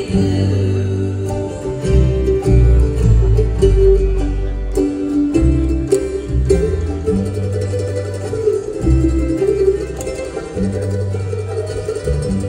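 Bluegrass band playing without vocals: upright bass notes under picked mandolin, banjo and acoustic guitar, with fiddle.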